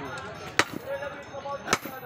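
Sledgehammer blows on an iron workpiece on a blacksmith's anvil, two sharp strikes about a second apart, as a striker forges the metal by hand.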